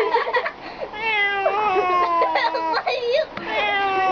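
Domestic cat meowing in long drawn-out calls, each sliding slowly down in pitch: one starting about a second in and lasting nearly two seconds, another starting near the end.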